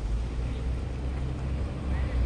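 Steady low rumble, strongest in the deep bass, with no distinct events standing out.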